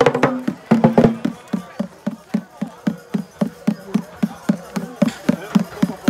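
A hand drum beaten in a steady, fast, even rhythm of low strokes, about four a second. Voices break in briefly about a second in.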